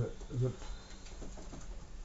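A man's low, slow voice speaking a single drawn-out word, then a pause with faint room tone.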